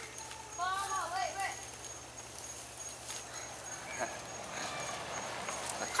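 Faint voices calling out briefly about a second in, likely the departing kids, then a few soft clicks and rustles. A thin, steady high-pitched tone runs under it all.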